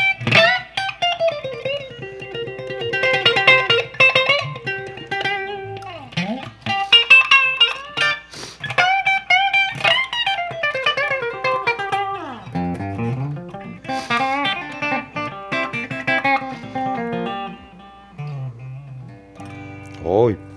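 Spear RT T electric guitar with GVP pickups, played through a Marshall JCM2000 amplifier on its clean channel: a single-note lead line with string bends and slides, moving down into lower phrases about twelve seconds in.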